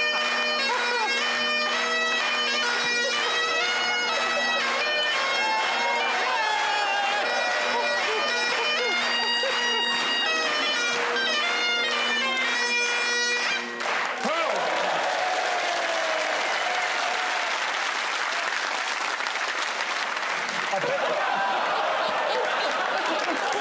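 Bagpipes playing a tune, the chanter's melody over a steady drone; the piping stops abruptly about 14 seconds in. Studio audience applause with laughter follows.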